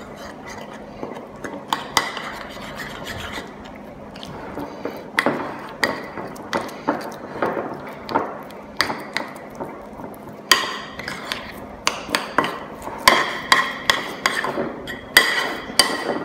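Metal spoon stirring wet arepa dough in a ceramic bowl, clinking and scraping against the bowl in irregular strokes. The strokes are sparse at first and come much faster and louder from about two thirds of the way in.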